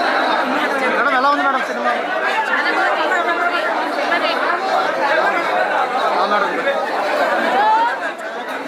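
Several people talking over one another, a continuous babble of overlapping voices.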